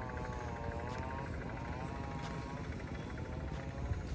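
A small engine running in the distance, a buzzing drone whose pitch wavers slowly up and down.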